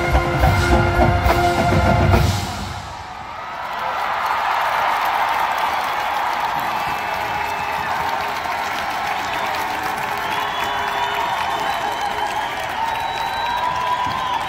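A marching band's brass and drums play a held chord that cuts off about two seconds in, followed by a stadium crowd cheering and applauding.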